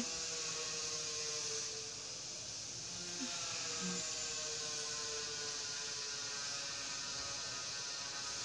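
A low, steady hum made of several faint pitched tones over a constant hiss, with no speech.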